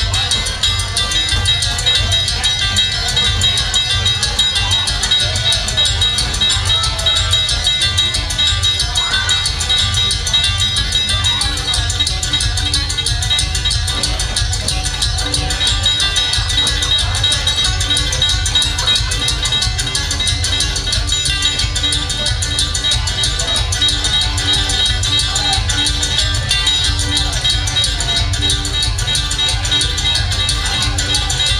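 Live bluegrass band playing loudly: mandolin, banjo and a one-string gas-tank bass, with a strong steady bass line.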